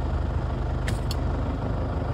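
Car engine running with a steady low hum, heard from inside the car's cabin.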